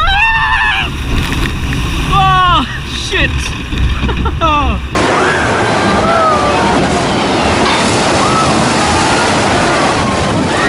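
Riders' wordless shouts and whoops over a low rumble in a log flume boat. About halfway through the sound cuts to a steady rush of water pouring down the flume chute into the splash pool, with faint voices above it.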